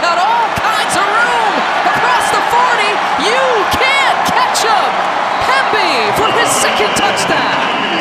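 Football stadium crowd cheering loudly throughout a long touchdown run, with many voices shouting and whooping over the steady roar.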